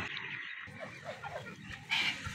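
A few faint, short falling animal calls in quick succession, over low background noise.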